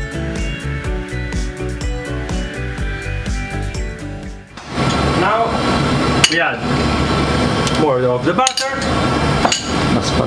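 Background music with a steady beat, then, about four and a half seconds in, a loud, steady sizzle starts up. It comes from fresh egg tagliolini tossed into a stainless frying pan of butter and pasta water over a strong gas flame.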